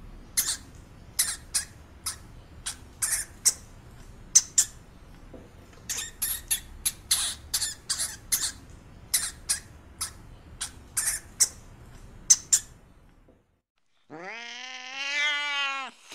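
A hamster making a run of short, high-pitched squeaks, irregularly spaced, for about thirteen seconds. After a brief silence a cat gives one long meow that rises and falls in pitch near the end.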